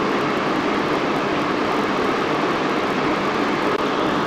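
Steady background noise: an even, unchanging hiss with no distinct events.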